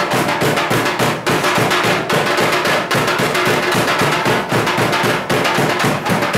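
Loud, fast, steady drumming by festival percussion, many sharp strikes a second in a continuous rhythm.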